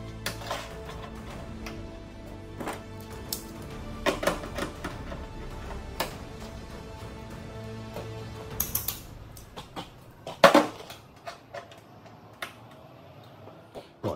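Locking pliers being clamped onto the edge of a new steel van door skin: scattered metallic clicks and clacks, the loudest about ten and a half seconds in. Background music runs under them and stops about two-thirds of the way through.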